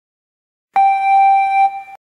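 Desk telephone's electronic ringer sounding once: a steady high tone that starts suddenly about three-quarters of a second in, holds for about a second and then fades.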